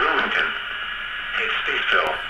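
NOAA Weather Radio broadcast on 162.475 MHz, received by an RTL-SDR dongle and played through SDRTrunk's narrowband FM decoder. A faint broadcast voice sits under steady hiss in thin, radio-bandwidth audio. Reception is not perfect and the signal is not yet fine-tuned.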